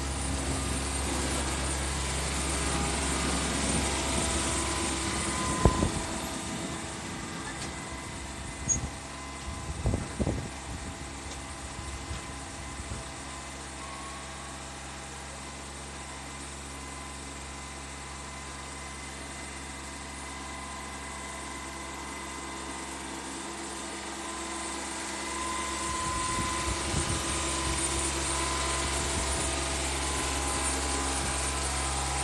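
John Deere F935 front mower's engine running steadily while it works a front loader bucket, with a few sharp knocks about 6 seconds in and again around 9 to 10 seconds. The engine fades in the middle as the machine moves away and grows louder again near the end as it comes back.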